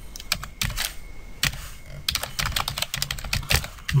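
Typing on a computer keyboard: a run of irregular keystroke clicks, coming faster in the second half.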